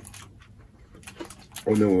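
A quiet stretch with a few faint clicks, then a man's voice starts speaking near the end.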